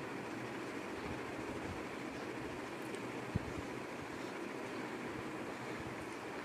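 Steady frying noise from diced potatoes and onions in an aluminium kadhai on a gas burner as they are stirred, with a single soft knock a little over three seconds in.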